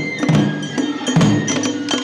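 Festival hayashi music for suzume odori: shinobue bamboo flutes playing a held, high melody over taiko drums beaten in a quick, steady rhythm, with sharp strikes several times a second.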